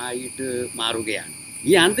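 Steady high-pitched chirring of insects, running on unbroken behind a man's speaking voice.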